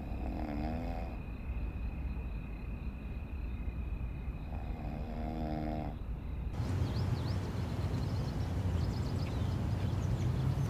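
A sleeping person snoring: two drawn-out snores about four and a half seconds apart. About six and a half seconds in, this gives way to a steady outdoor background with a low rumble.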